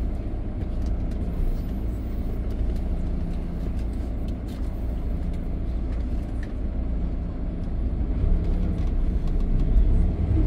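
Tour bus engine running at low speed, heard inside the cabin as a steady low rumble that grows a little louder near the end as the bus moves forward.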